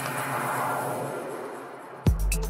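Electronic dance music in a breakdown: a beatless wash of noise with no bass fades gradually away.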